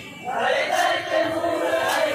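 Group of men chanting a marsiya, a Muharram elegy for Hazrat Husain, together in unison, coming in about half a second in after a brief lull. Two sharp hits cut through the chant, one under a second in and another near the end.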